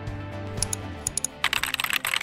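Background music, then from about a second and a half in a fast clatter of computer-keyboard typing, part of a news bulletin's intro jingle.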